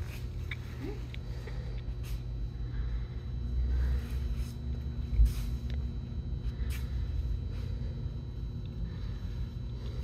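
A steady low room rumble, with faint rustles of a fabric costume piece being fitted and fastened on a person and one dull thump about five seconds in.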